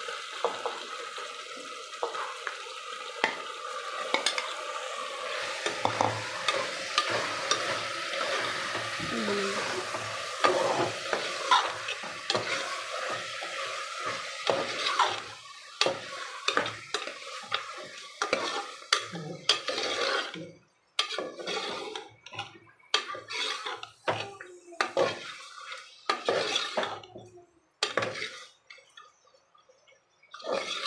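Raw mutton pieces sizzling in hot oil in a pressure cooker while a spatula stirs them, scraping and knocking against the pot. The sizzle is steady for about the first half; after that it thins out into separate stirring strokes with short pauses.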